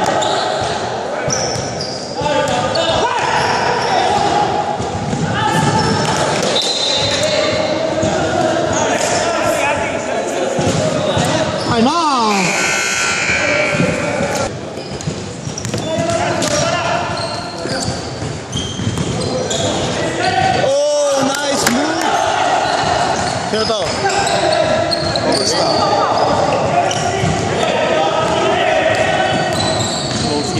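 Basketball game sounds in a reverberant gym: a ball bouncing on a hardwood court while players call out. Two sharp sneaker squeaks stand out, near the middle and about two-thirds of the way through.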